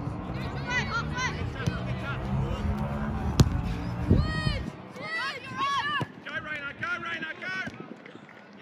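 Shouts and calls from players and spectators around a youth football pitch, short high-pitched yells coming one after another, over a low wind rumble on the microphone that stops about halfway through. About three and a half seconds in, a single sharp thud of the football being kicked.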